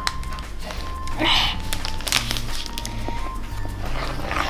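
Background music with steady low notes, with a couple of brief soft scraping sounds from a metal spoon stirring sticky marshmallow-and-cornstarch mixture in a plastic bowl.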